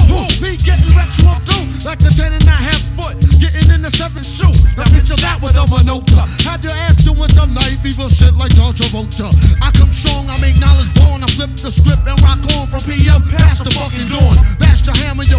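Hip hop song: a rapped verse over a beat with a heavy, repeating bass line.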